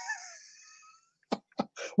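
A voice trailing off in the first half-second, then a near-silent gap broken by two brief clicks about a quarter second apart.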